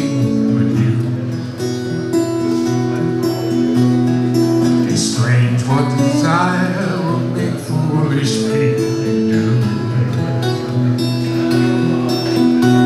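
Acoustic guitar strummed in steady chords, played live through a PA, with a man singing a line about halfway through.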